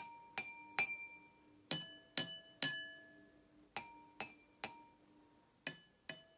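Two glasses holding different amounts of water tapped in turn, in sets of three taps each that ring on briefly: the glass with little water rings higher, the nearly full glass rings lower, and the high and low sets alternate.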